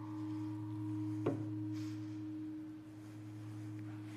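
A large singing bowl ringing with a low steady hum and a higher overtone, struck once more about a second in, the ring slowly fading.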